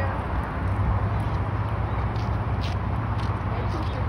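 Car engine idling, a steady low hum.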